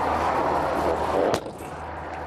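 Motorhome's side storage compartment door swung down and slammed shut: about a second of rushing noise, then one sharp bang just past the middle as it latches.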